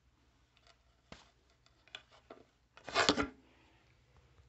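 Scattered plastic clicks and scraping from a ceiling smoke alarm being handled as its 9-volt battery is pried out, with a louder scrape and rustle about three seconds in.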